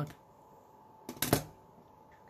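Two sharp clicks close together, a little over a second in, from hard objects being handled on the tabletop, most likely the digital calipers being moved or set down. Otherwise only faint room tone.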